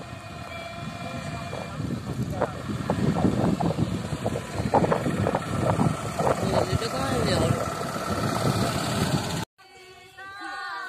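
An auto-rickshaw's small engine running, mixed with people's voices; the sound cuts off suddenly near the end.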